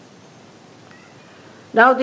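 A pause in a woman's talk, with only the steady hiss of an old recording, then near the end she begins speaking with a drawn-out "now" whose pitch glides.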